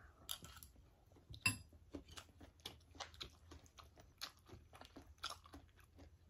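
Chewing and crunching a green mango salad with fried dried snakeskin gourami: a run of faint crisp crunches, with a louder one about a second and a half in.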